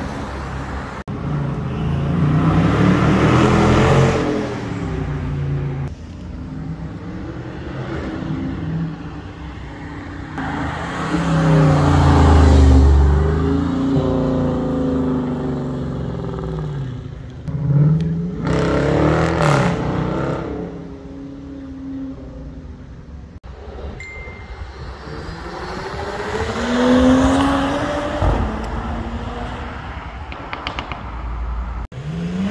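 A run of short clips of sports cars accelerating hard past on a city street. Each engine revs up through a gear or two and fades as the car drives off, several times over, with street traffic noise between.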